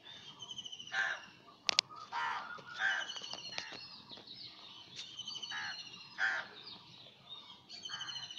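Birds calling: repeated high, rapid chirping trills throughout, with several harsher, lower calls every second or so. A single sharp click comes just under two seconds in.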